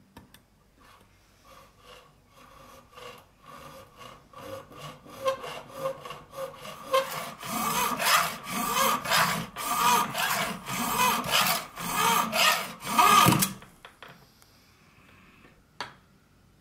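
Small hacksaw cutting into a brass key blank, cutting the key's bit: repeated back-and-forth strokes, about two a second, growing louder as it bites, stopping abruptly about 13 seconds in. A single click near the end.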